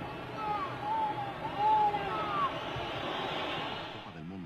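Stadium crowd noise from a football match broadcast, with a faint voice shouting "¡La hora! ¡La hora!" in the first half, calling for the final whistle.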